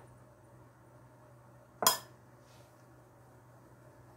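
A single sharp clink of something hard striking the glass mixing bowl, with a brief ring, about two seconds in; otherwise a quiet kitchen with a faint low hum.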